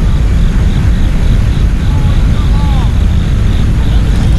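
Wind buffeting the camera's microphone: a loud, steady, low rumble. A faint short call is heard about two seconds in.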